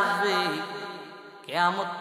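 A man's voice chanting in the drawn-out melodic style of a Bangla waz sermon through a microphone. A held note slides down and fades, and a new sung phrase starts about one and a half seconds in.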